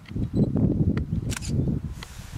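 Handling noise on the camera's microphone: an uneven low rumble of bumps with a few sharp clicks, as the camera is moved.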